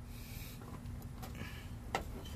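Faint handling noise of a wire being worked through a rubber grommet in a sheet-metal panel, with one sharp click near the end.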